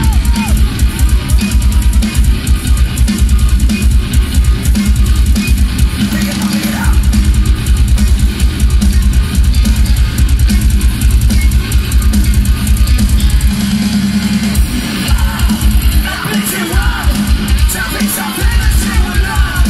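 Progressive metal band playing live and loud: heavily distorted guitars over drums with a fast, steady kick-drum pulse, which drops out briefly twice in the second half.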